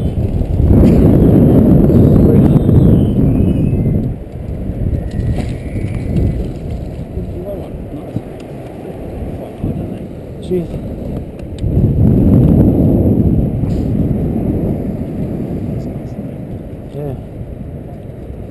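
Wind rumbling on the camera microphone, surging loud twice, with faint muffled voices.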